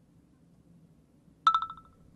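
A single mobile-phone message alert chime about one and a half seconds in: a bright ping that fades out in quick repeating pulses, over faint room tone.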